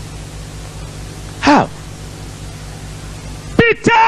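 Steady hiss with a low hum, broken about a second and a half in by one short vocal shout that falls sharply in pitch; speech begins near the end.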